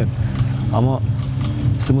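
A man talking, with a steady low hum running underneath his voice.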